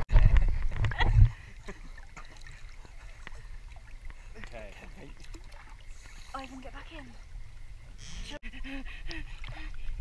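Pool water splashing and lapping around a waterproofed action camera, with a loud low rumble over the first second or so, then faint voices of people in the water.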